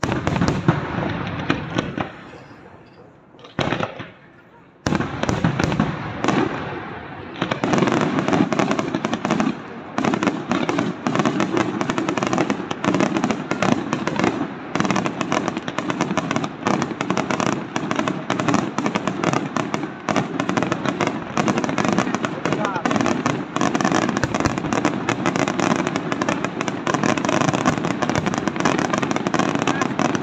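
Aerial firework shells bursting. A loud burst right at the start fades over about three seconds, and a short burst follows near four seconds. From about seven seconds in, a dense, unbroken barrage of bangs and crackling takes over, as in a display's finale.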